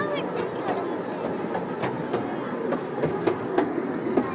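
Miniature ride-on train running along narrow-gauge track, its wheels clicking irregularly over the rail joints, the clicks coming more often in the second half.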